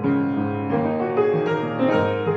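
Piano played solo in a free improvisation: a run of notes and chords struck in quick succession, with louder attacks about a second in and near the end.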